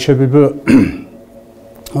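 A man speaks a few syllables, then clears his throat once, less than a second in.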